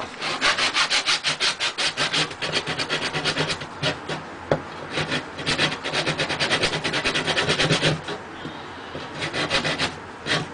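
Hand saw cutting through a small piece of wood in quick, even back-and-forth strokes, about five a second. The strokes pause briefly and then resume near the end.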